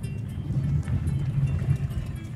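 Inside a small car driving slowly on a rough dirt road: a steady low rumble of engine and tyres, with scattered light ticks, and music playing in the cabin.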